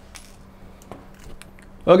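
A few faint, light clicks and taps as a Tecno Pouvoir 4 smartphone's SIM card tray is worked out of the phone's side after being popped with the ejector pin.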